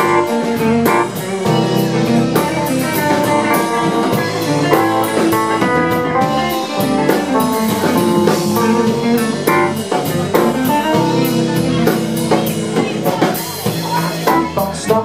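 Live band playing: electric guitar, bass guitar, drum kit and electric keyboard together, with steady drum hits throughout.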